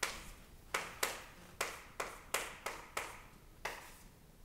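Chalk writing on a chalkboard: about nine quick strokes at an uneven pace, each a sharp tap of the chalk that trails off in a brief scrape.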